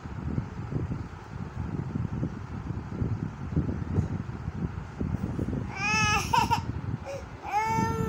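Young child crying: two high-pitched, wavering wails near the end, over a low rumbling background noise.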